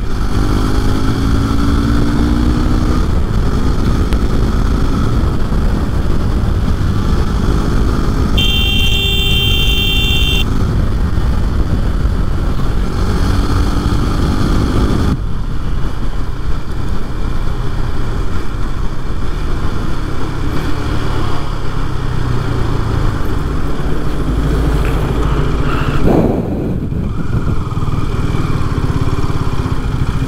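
KTM RC sport bike riding at highway speed, its engine running under heavy wind noise on the rider-mounted microphone. A vehicle horn sounds for about two seconds roughly a third of the way in. Near the end the engine note rises briefly, then the sound eases as the bike slows.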